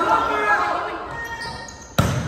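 Volleyball rally in an echoing gym: players' shouts and calls fade away, then the sharp smack of a hand spiking the ball right at the end.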